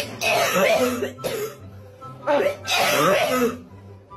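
A person coughing and clearing their throat in two bouts, over background music. It sounds like someone ill: right afterwards it is called something that "does not sound good at all".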